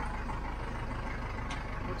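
Step-van bread truck's engine running with a low, steady rumble, heard inside the cab as the truck creeps along a dirt track. A single sharp click comes about a second and a half in.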